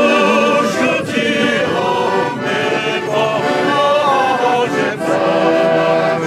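A crowd singing a slow song together, accompanied by an accordion, with long held notes.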